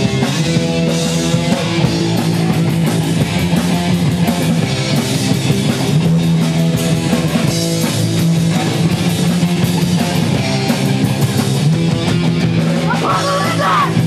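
Punk rock band playing live, with distorted electric guitar and bass chords over fast drums and crashing cymbals. A voice comes in singing near the end.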